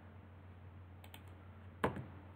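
A few light computer keyboard key clicks about a second in, then one sharper key click near the end, over a faint steady low hum.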